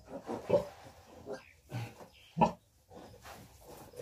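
Pigs in a farrowing pen making several short grunting calls, the loudest about two and a half seconds in.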